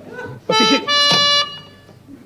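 A short run of held, reedy tones: two or three notes of about a third of a second each, the last one higher, which stop abruptly after about a second.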